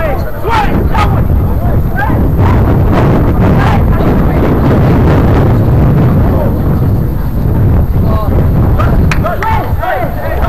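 Wind buffeting the microphone in a loud, steady low rumble, with distant shouting voices under it and a few sharp clicks about half a second in, about a second in and just after nine seconds.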